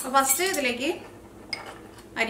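A woman's voice speaking for about a second, followed by a quieter stretch with a single light clink of kitchenware.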